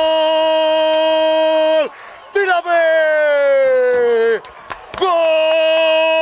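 A sports commentator's drawn-out goal cry, a loud vowel held on one steady note; it breaks off about two seconds in, comes back as a falling cry, stops briefly, and is held on the steady note again near the end.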